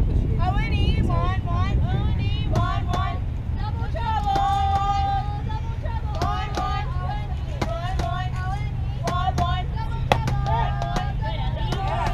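High-pitched girls' voices calling, cheering and chanting, some notes drawn out in a sing-song way, over a steady low rumble. A single sharp knock stands out about ten seconds in.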